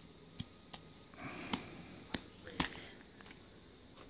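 Silver rounds clicking against one another and against a clear plastic coin tube as they are pushed into it, a tight fit: a handful of short, sharp clicks over a few seconds, the loudest about two and a half seconds in.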